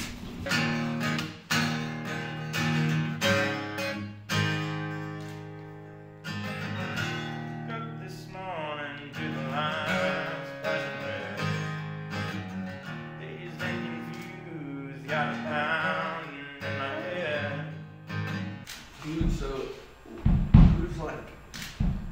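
Acoustic guitar being strummed, chords ringing out one after another, with a voice singing two short phrases over it partway through. A few low thumps come near the end.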